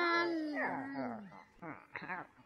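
A long vocal call, either a voice or a howl, that slides slowly down in pitch and fades away over about a second and a half, followed by a few short, faint sounds.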